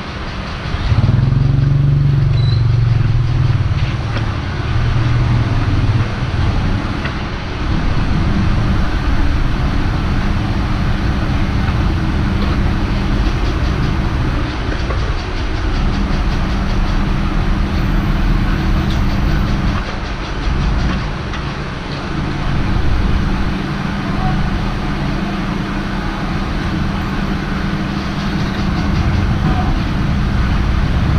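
Motorbike engines idling and pulling away at close range, a steady low rumble. A louder, deeper engine note sounds for the first few seconds.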